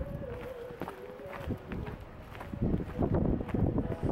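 Footsteps crunching on packed snow at a walking pace, about two or three steps a second. A wavering tone runs through the first half. Wind rumbles on the microphone from just past halfway.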